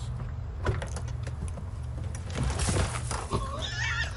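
A car door opening and a man falling out of an SUV onto a gravel drive: a few knocks and clicks, then a burst of noise about two and a half seconds in as he lands. A voice is heard near the end.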